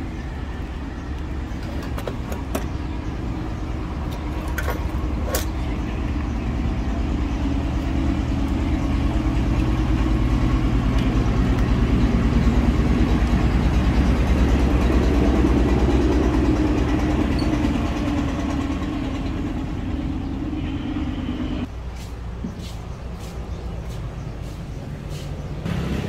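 A vehicle engine running with a steady low hum that grows louder to a peak around the middle, then fades and drops away sharply about three-quarters through. A few sharp clicks come in the first several seconds.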